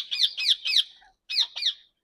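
Green parakeets giving short, shrill calls that slide down in pitch: a quick run of about five in the first second, then two more after a brief pause.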